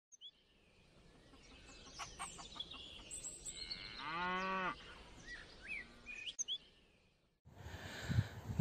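A cow gives one short, faint moo about four seconds in, among faint bird chirps, in a rural soundscape.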